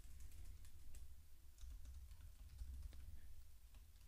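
Faint typing on a computer keyboard: a scatter of irregular key clicks.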